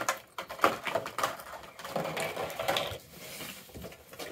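Irregular clicks, taps and rustles of a clear plastic packaging insert and a vinyl Funko Pop figure on its clear plastic stand being handled on a wooden table.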